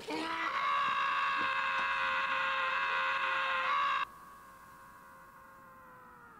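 A long, loud scream held on one pitch for about four seconds, then carrying on much quieter.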